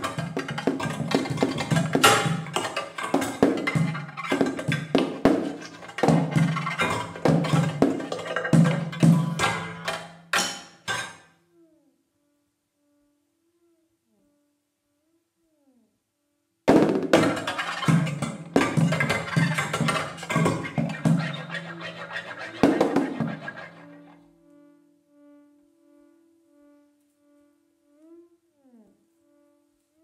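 Free-improvised percussion: contact-miked cymbals scraped, rattled and struck with a wire kitchen whisk in dense clattering passages. The playing breaks off near 11 s, comes back suddenly a few seconds later and thins out by about 24 s. Quiet steady electronic tones with short gliding blips from a Ciat-Lonbarde Plumbutter synthesizer are left sounding at the end.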